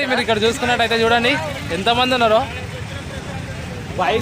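Men talking over a steady background of road traffic and crowd noise; the talk stops about two and a half seconds in, leaving the traffic noise.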